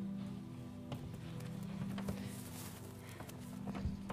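Soft background music of steady, held low notes, with a few light knocks and shuffles scattered through it.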